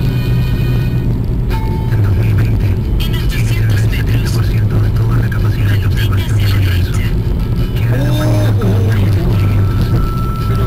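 Steady low drone of a car's engine and road noise heard from inside the cabin while driving, with music and indistinct voices underneath.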